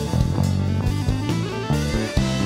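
Live funk band playing an instrumental passage: drum kit with busy hits over electric bass, electric guitar and keyboard. A note slides upward in the second half.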